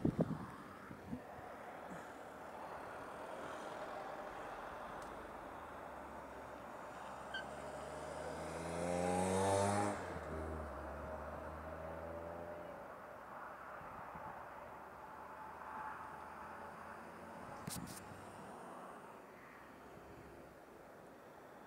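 A motor vehicle's engine rising in pitch as it accelerates past, loudest about nine to ten seconds in, then running steadily and fading, over outdoor background noise. A short click near the end.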